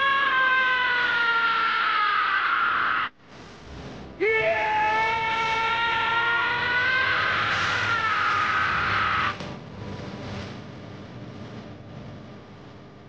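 Anime character voices screaming in two long, high-pitched held yells. The first cuts off suddenly about three seconds in, and the second runs from about four to nine seconds in, after which it goes much quieter.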